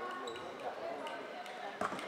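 Floorball play in an echoing sports hall: a single sharp clack near the end, from the stick, ball or boards, over players' indistinct shouts and calls.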